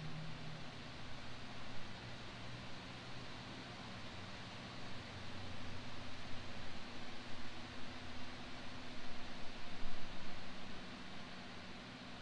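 Outdoor ambience: a steady hiss with the low hum of distant road traffic, swelling louder between about five and eleven seconds in.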